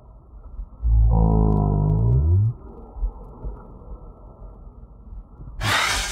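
A loud, low droning tone that rises in pitch over about a second and a half. Near the end comes a sudden burst of electric zapping and crackling, an added electric-shock sound effect.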